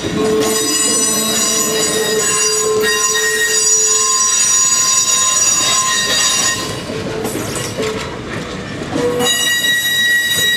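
Steel wheels of slowly rolling passenger coaches squealing against the rails, a shrill sound of several steady tones at once. It eases off for a couple of seconds past the middle and starts again near the end.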